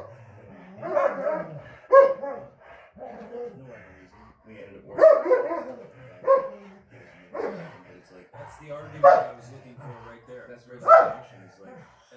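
Dogs barking while playing: about eight sharp barks at irregular gaps of one to two seconds.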